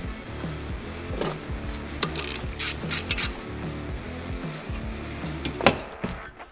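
Background music with metal clicks and clanks as a steel clutch holding tool is fitted over a CVT's primary and secondary clutch sheaves. A cluster of clicks comes in the middle, and a single sharper knock comes near the end.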